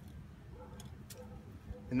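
Faint handling noise as twine is knotted around a pair of chopsticks: two light ticks about a second in, over a low steady background rumble.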